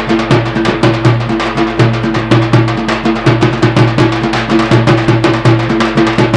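Instrumental break in Banjara folk wedding music: a fast, even drumbeat over sustained low notes, with no singing.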